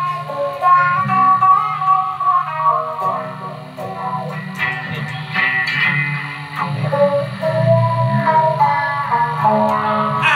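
Electric guitar played through a small practice amplifier, with sustained notes, some of them bending in pitch.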